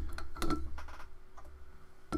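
Handling noise: a few light clicks and knocks as a glass beer bottle is handled on a wooden desk, over a steady low rumble.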